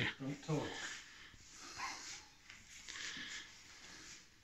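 Faint breathing and clothing rustle from two men working a wing chun partner drill, a few soft bursts about two and three seconds in.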